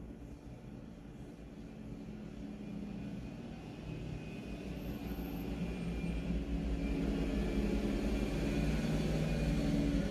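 A low engine drone with a steady hum in it, growing gradually louder.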